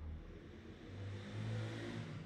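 A motor vehicle heard going past: a low engine hum with a rushing sound that swells to its loudest about one and a half seconds in, then fades.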